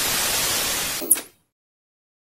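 Analogue television static: a loud, even hiss of a detuned set showing snow. It cuts off about a second in with a brief falling zap, like an old tube TV being switched off.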